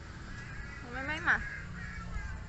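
Baby monkey giving one short call about a second in, rising in pitch and ending sharply loud.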